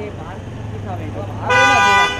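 A car horn honks once, a loud steady blast of about half a second that starts suddenly near the end, over crowd chatter.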